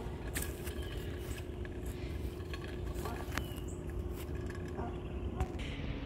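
A truck engine running steadily on the road, heard as a constant low hum with rumble, with a few faint clicks and rustles. Near the end the hum drops lower and the sound changes abruptly.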